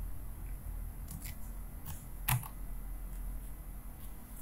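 A few sparse computer keyboard keystrokes, short clicks, the loudest about two and a half seconds in, over a steady low hum.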